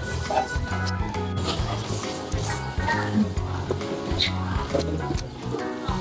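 Background music with a steady, repeating bass line.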